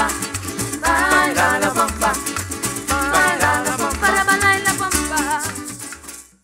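Live parang band playing: cuatro and guitars strumming, maracas shaking steadily, a rhythmic bass line and voices singing. The music dies away in the last second.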